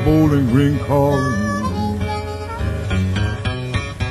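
Live acoustic blues: harmonica playing bent, sliding notes over acoustic guitar, giving way about halfway through to a choppy rhythm of short repeated notes.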